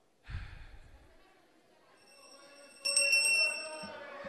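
The Senate president's hand bell rung rapidly several times for about a second near the end, calling the chamber to order. A soft low thump comes about a quarter second in.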